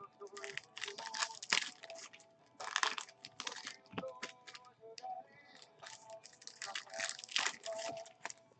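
Trading-card pack wrappers crinkling and tearing in a string of short, irregular crackles.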